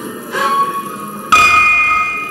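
Bell-like electronic tones from a live set of real-time Kyma sound processing: a softer struck tone about a third of a second in, then a loud one just after a second, each ringing on and slowly fading.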